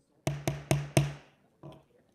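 Gavel rapping, four quick sharp knocks within about a second and then a fainter fifth, calling the meeting to order.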